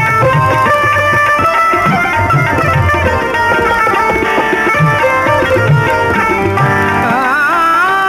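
Tabla and harmonium playing an instrumental passage of a Sindhi kafi: steady held harmonium notes over a rhythmic tabla pattern whose bass drum strokes bend in pitch. Near the end a wavering melodic line slides in over the held notes.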